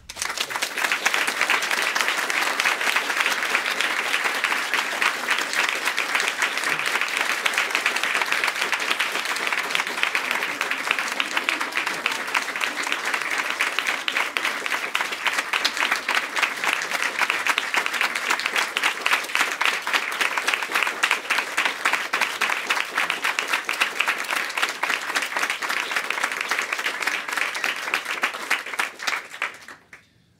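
Audience applauding, a dense, steady clapping that starts suddenly and cuts off abruptly near the end.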